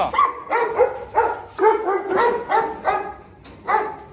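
A large dog, a Presa Canario, vocalizing close up: a rapid series of short, high-pitched cries, about eight, with a pause before a last one near the end.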